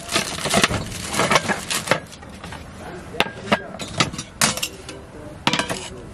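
Camping cookware being taken out of a storage crate and set down on its lid: an irregular run of knocks, clatters and clinks of metal and ceramic.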